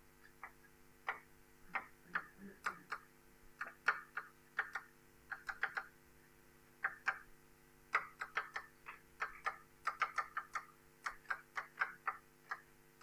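Chalk on a blackboard during writing: irregular short taps and scratches, often in quick clusters, over a faint steady hum.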